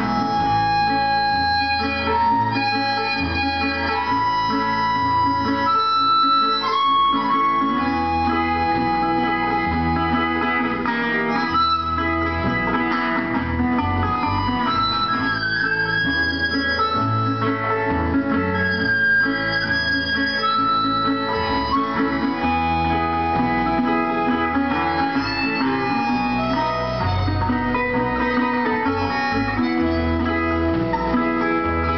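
Live harmonica solo, played with cupped hands into a microphone, over a strummed acoustic guitar. The harmonica carries the melody in held and stepping notes while the guitar keeps a steady rhythm.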